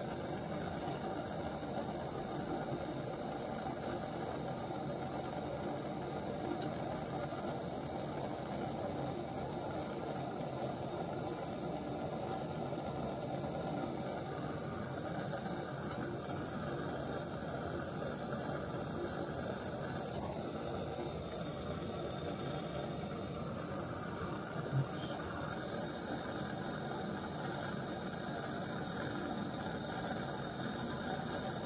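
Hose-fed gas blowtorch burning with a steady hiss as its flame heats a copper pipe tee joint to solder it. A single short tap sounds late on.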